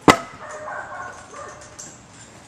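A single sharp, loud smack of a wooden stick swung down onto a table, just after the start, followed by faint quieter sounds.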